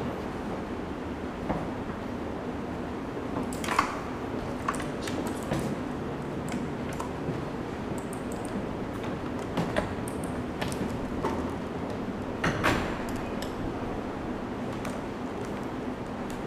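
Quiet room tone with a steady low hum and scattered light clicks and knocks, from someone at a laptop and moving about the room.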